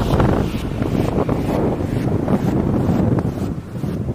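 Wind buffeting the microphone, an uneven low rumble that rises and falls.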